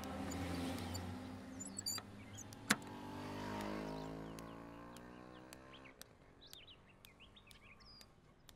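A motor vehicle passing, its engine note falling slowly in pitch over about three seconds, with one sharp click near its start. Birds chirp in the last two seconds. The tail of background music fades out at the start.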